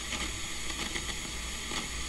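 Steady hiss with a low hum and a few faint crackles: noise from a blank video signal.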